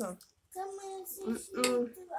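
A woman's voice making short hummed "mm-hmm" sounds through a full mouth while eating: three brief held hums at a steady pitch, starting about half a second in.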